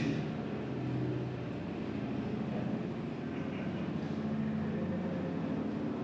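Steady low mechanical drone, with a few humming tones that shift slightly in pitch.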